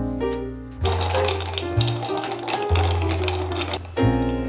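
Background music with a steady bass line. From about a second in until just before the end, a dense rustling with light ticks plays over it: tapioca flour being shaken through a plastic sieve into a frying pan.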